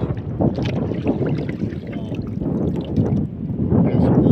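Wind buffeting the phone's microphone in uneven gusts, a loud, rough low rumble that swells and dips.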